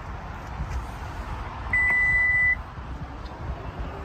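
A single electronic beep from the Lexus RX 350: one steady high tone just under a second long, about halfway through, over a continuous low rumble.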